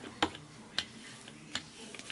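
A few light, sharp clicks and taps, about three in two seconds, from craft tools being handled on a tabletop.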